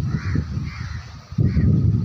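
A bird calls three times, short calls over a loud low rumble that runs underneath.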